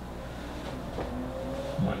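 A tap and then a short, thin steady squeak of a marker drawn across a whiteboard, about halfway through, over a low steady room hum.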